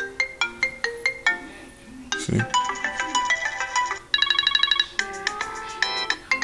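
iPhone ringtones on iOS 7 previewed one after another from the ringtone list, about four different melodies in turn, each cut short as the next one is tapped. One of them is a fast run of repeated high beeps about four seconds in.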